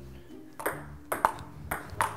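Table tennis rally: the ball clicking sharply off the paddles and the table, about two hits a second.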